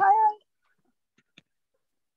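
A voice on a video call drawing out a high, sing-song "hi" in the first half second, then near silence with one faint click.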